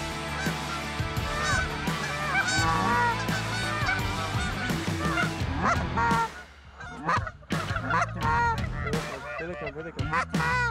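Canada geese honking, many calls overlapping at first, then thinning to fewer, separate honks after about six seconds.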